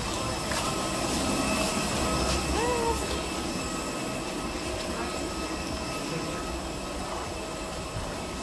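Steady drone of aircraft and jet-bridge machinery while passengers walk off a plane, with a brief voice about three seconds in.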